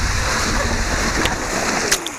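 Water rushing through an enclosed tube waterslide as a rider slides down it, a loud steady rushing noise with a couple of sharp knocks, then a splash as the rider drops into the pool at the very end.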